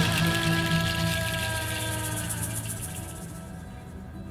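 The close of a song dying away: held notes sink slightly in pitch under a seed-pod shaker rattle, and both fade toward the end.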